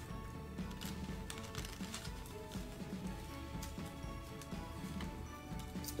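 Quiet background music with a simple melody of held notes, over faint crinkling and rustling of a plastic bag of paper die-cuts being tipped out and handled.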